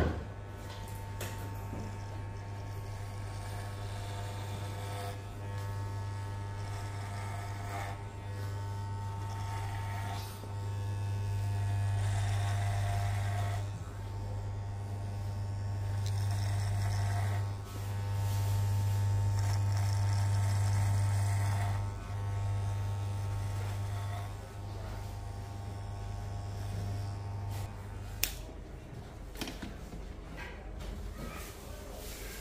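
Freshly oiled electric hair clippers buzzing steadily as they trim the hair at the sides, swelling louder at times as they work close to the ear. The buzz cuts off about two seconds before the end, followed by a single sharp click.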